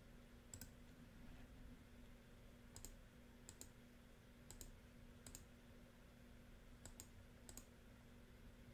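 Computer mouse button clicked about seven times, each a quick press-and-release double tick, over a faint steady hum.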